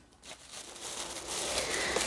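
Rustling and crinkling of items and packaging being handled, starting after a short hush and growing steadily louder.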